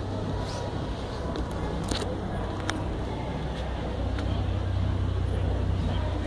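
Road traffic on a city street: a steady low rumble of passing cars, with a few short clicks.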